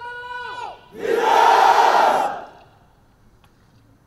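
A parade-ground word of command ends on a long drawn-out note that drops away. About a second later the massed ranks give a loud shout in unison that lasts about a second and a half.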